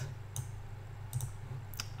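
Computer mouse clicks: a few short, sharp clicks, some in quick pairs, over the steady low hum of a computer fan picked up by a desk microphone.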